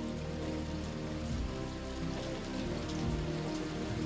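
Steady rain falling, with soft sustained music notes underneath.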